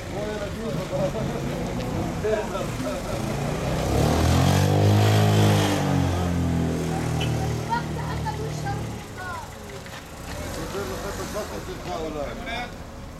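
A car drives past close by, swelling to a peak about five seconds in and fading away by about nine seconds, amid scattered voices in the street.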